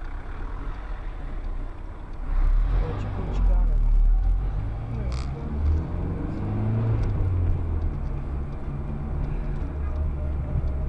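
Car engine and road noise heard from inside the cabin as the car pulls away from a standstill and accelerates, the low rumble growing louder about two seconds in.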